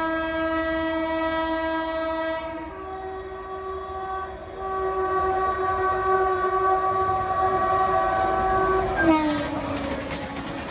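Horn of an approaching WAP7 electric locomotive at about 90 km/h, blown as one long continuous blast of about nine seconds whose chord shifts to a slightly different pitch about two and a half seconds in. About nine seconds in the horn's pitch drops sharply as the locomotive passes, and the rattle of the passing coaches follows.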